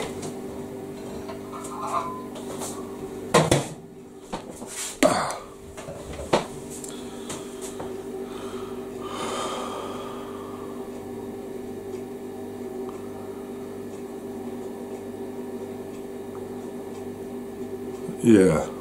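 A few sharp clinks and knocks of cutlery on a plate, loudest about three and a half and five seconds in, over a steady low electrical hum.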